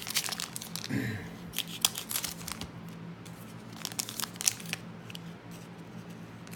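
Wrappers of hockey-card packs crinkling and crackling as they are handled, with irregular sharp crackles, the loudest just before two seconds in and again near the middle.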